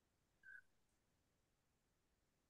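Near silence on a video-call audio line, with one faint, very short tone about half a second in.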